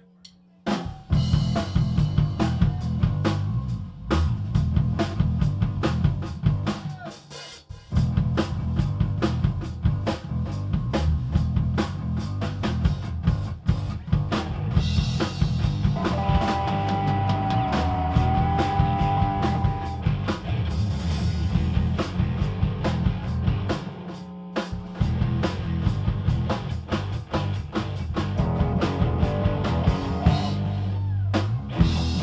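Live rock band with drum kit, electric bass and electric guitar kicking into a song after a brief near-silent moment, the drums driving a steady beat with sharp snare and bass-drum hits. The band stops for a beat about eight seconds in, and a long held note wavers slightly in pitch around the middle.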